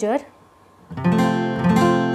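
Acoustic guitar strummed once about a second in, an F major chord ringing out.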